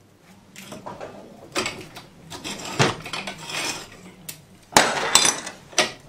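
A spanner and steel steering-box parts clinking and knocking against each other as the steering box of a Land Rover Series One is stripped down in a bench vise, with irregular clicks throughout and several sharp metal knocks in the second half.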